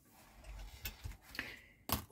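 Faint handling noise of a plastic scale-model car chassis being moved by hand, with a few light clicks, the sharpest near the end.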